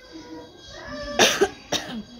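A woman coughing: a strong cough a little over a second in, then a shorter one about half a second later.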